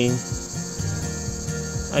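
Steady, high-pitched chirring of insects, with a low steady hum beneath.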